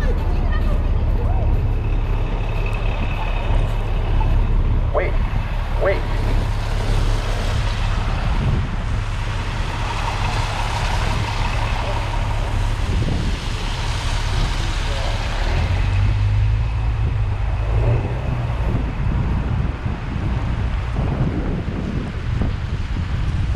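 City street traffic on a slushy road: a steady low engine rumble, with tyre hiss swelling as vehicles pass on the wet pavement, loudest in the middle. Two short chirps about five and six seconds in.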